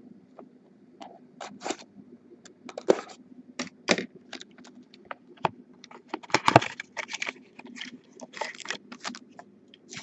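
Hands opening sealed cardboard card boxes and handling foil-wrapped card packs: an irregular run of crinkles, scrapes and clicks, loudest about six and a half seconds in.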